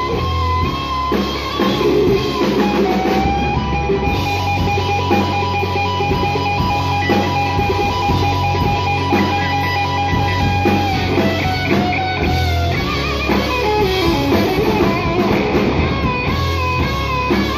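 Live rock band playing loud: an electric guitar solo over bass guitar and drums, the lead guitar holding one long sustained note for several seconds from about three seconds in, with bent notes before and after it.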